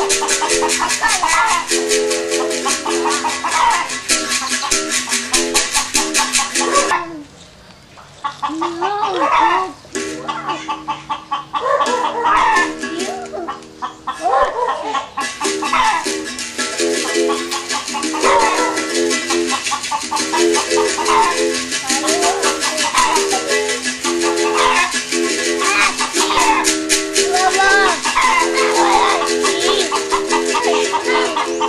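Berimbau played with a caxixi shaker: the caxixi rattles in a fast, even rhythm over the bow's alternating low and high notes. The playing breaks off briefly about seven seconds in.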